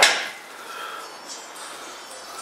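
A single sharp metal clank from the barbell and weight rack at the very start, ringing out briefly.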